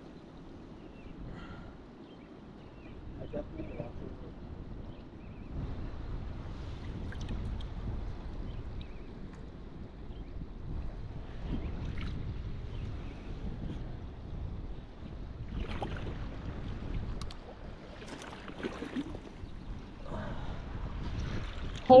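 Shallow river water swishing around a wader's legs, with wind noise on the microphone. It gets somewhat louder about five seconds in.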